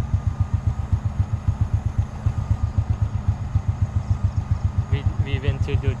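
Small motorbike engine idling: an even, pulsing low rumble.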